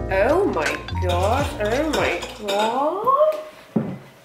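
Background music with a steady bass line that stops about halfway through, under a woman's drawn-out, sliding sing-song vocal sounds. A few sharp clicks are scattered through it.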